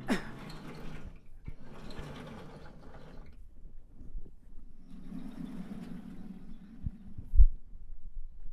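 Chalk drawing long strokes on a blackboard: three scraping strokes of a second or more each, followed by two short low thumps near the end.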